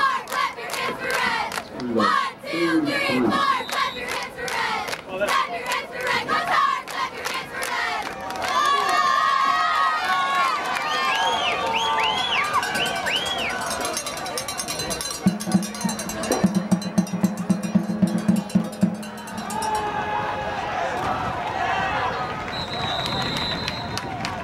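Football crowd in the stands shouting and cheering, with sharp claps through the first several seconds. A rapid pulsing buzz sounds around the middle, and a short high whistle near the end.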